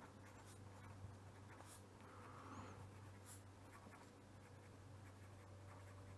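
Very faint scratching of a pen writing on paper, in a few short strokes, over a low steady hum.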